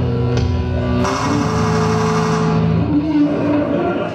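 Live rock music: electric bass guitar and held chords sounding loudly, with a bright, noisy swell coming in about a second in. The music dies away near the end as the song finishes.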